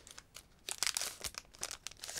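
Thin foil wrapper of a Pokémon TCG booster pack crinkling as the cards are slid out of the opened pack, a run of light crackles starting a little under a second in.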